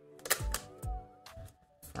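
Canon RF 50mm F1.8 lens being twisted onto the lens mount of a Canon R6 body: a few light clicks and knocks, a little apart, as the lens locks into place, over soft background music.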